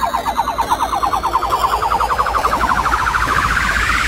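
Electronic trance music: a rapidly pulsing synthesizer riser glides steadily upward in pitch, siren-like, over a steady low bass pulse, the rising sweep of a build-up.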